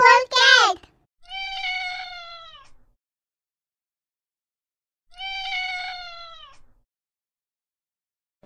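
A cat meowing twice, each meow about a second and a half long and sliding slightly down in pitch, the two about four seconds apart.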